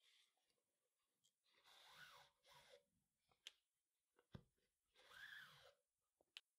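Near silence, with only a few very faint ticks.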